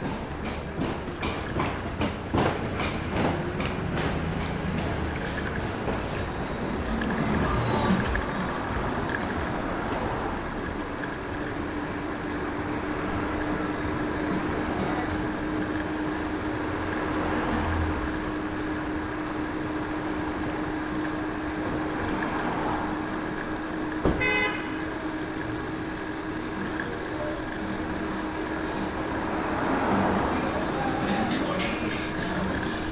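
Street traffic heard from a moving electric scooter under an elevated subway line. There is a rapid clatter in the first few seconds, a steady low hum through the second half, and a brief horn beep about 24 seconds in.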